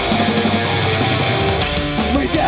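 A live heavy metal band playing loud distorted electric guitar and bass guitar over drums, an instrumental passage without vocals.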